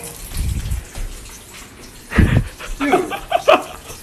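Water from a kitchen tap splashing into a stainless steel sink. About two seconds in, a voice cries out loudly, followed by more brief vocal sounds.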